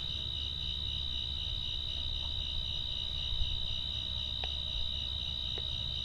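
Crickets trilling steadily in one continuous high-pitched tone, over a low steady hum, with a couple of faint ticks near the end.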